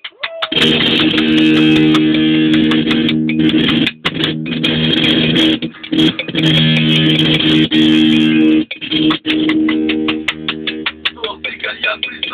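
Accordion and a one-stringed guitar playing together: held accordion chords broken by short gaps, with fast strummed guitar strokes that come thickest near the end.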